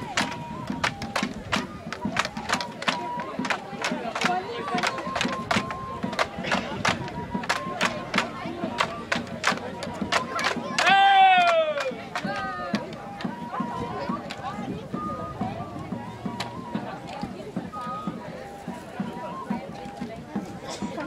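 Bamboo poles of a Terena pole dance (bate-pau) struck together in sharp clacks about twice a second, with a thin pipe holding high notes underneath. About eleven seconds in comes a loud shouted call that falls in pitch, the loudest sound, and after it the clacks grow sparse and faint.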